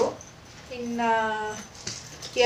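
A woman's voice speaking: one drawn-out, level-pitched syllable near the middle, with quieter pauses on either side.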